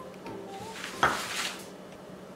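A small glass set down on the kitchen countertop with one sharp clink about halfway through, followed right after by the short rustle of a sheet of paper being picked up.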